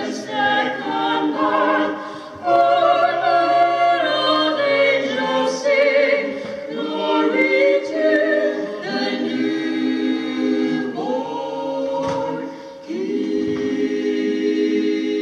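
A small mixed vocal quartet, two women and two men, singing unaccompanied in close four-part harmony. The chords change every second or so, and just before the end the voices settle onto one long held chord.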